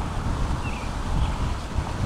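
Wind buffeting the microphone: a low, uneven rumble with no clear engine note above it.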